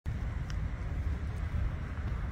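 Low, unsteady outdoor rumble with no distinct source.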